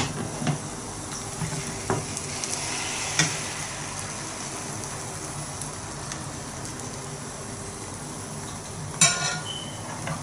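Beaten egg frying with a steady low sizzle in a nonstick frying pan, while a metal spoon taps and scrapes against the pan and the glass mixing bowl a few times early on. A louder metallic clatter, briefly ringing, comes near the end.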